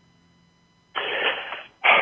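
Near silence, then about a second in a short rush of breath-like noise lasting under a second, carried over a narrow telephone line.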